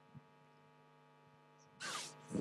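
Near silence with a faint, steady electrical hum, and a short burst of noise near the end.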